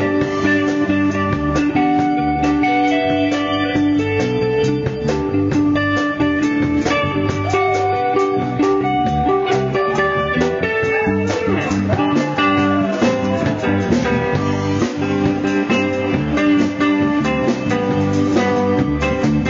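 A live jam band playing an instrumental passage: electric guitar over bass and drums, with the guitar bending notes up and down a little past the middle.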